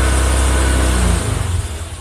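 Honda Vario scooter engine running at raised revs with the rear wheel spinning on the stand, held above 10 km/h as one of the conditions for the idling stop system. About a second in the throttle is released and the engine note drops to a lower, uneven pulsing as it falls back toward idle.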